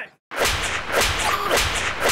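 Slapstick sound effects: a run of sharp whip-like cracks and whooshes, about two a second, starting about a third of a second in after a brief silence.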